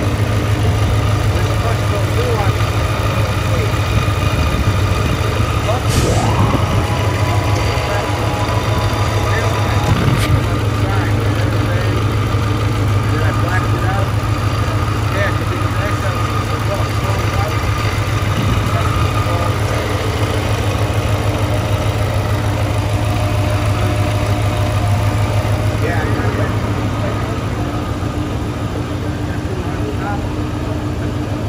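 Supercharged Ford F-150 engine idling steadily, heard close up at the open engine bay.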